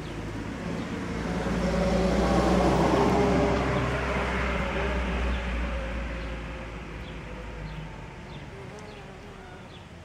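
A motor vehicle passing by: a rumble that swells to its loudest about two to three seconds in, then slowly fades away.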